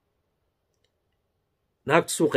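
Near silence in a pause between sentences, then a man's voice resumes near the end.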